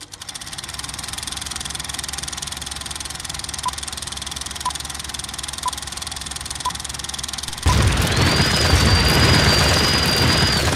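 Film-projector sound effect: a steady mechanical whir and clatter. From about three and a half seconds in, five short beeps about a second apart mark a film-leader countdown. Near the end a much louder rushing swell sets in suddenly, with a high tone that rises and then holds.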